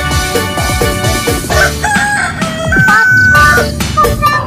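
Upbeat electronic background music with a steady beat, with a rooster crowing over it for about two seconds, starting around halfway and ending on a long held note.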